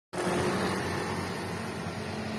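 Steady outdoor background noise with a faint low hum, like a motor vehicle running.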